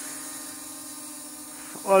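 Syma W1 brushless quadcopter drone in flight, its propellers giving a steady, even-pitched hum.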